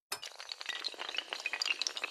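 Sound effect of a long chain of dominoes toppling: a fast, dense clatter of small hard clicks that starts abruptly and keeps going.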